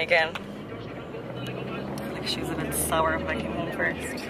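Steady low rumble of a car's engine and road noise heard from inside the cabin, with short snatches of voices at the start and about three seconds in.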